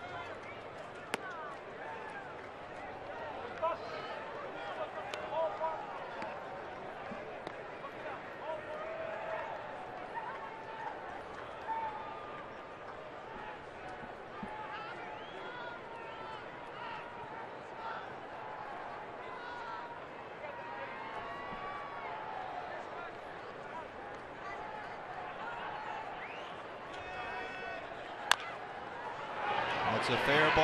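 Ballpark crowd murmur with scattered voices and shouts. A sharp pop about a second in as a pitch reaches the catcher's mitt, and a sharp bat crack near the end as the ball is hit on the ground, with the crowd growing louder right after.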